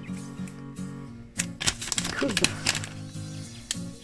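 Plastic protective film crackling as it is peeled slowly off a smartphone screen, loudest about one and a half to two and a half seconds in, over background music with a steady low chord pattern.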